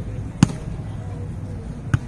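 Two sharp slaps of hands striking a volleyball, about a second and a half apart.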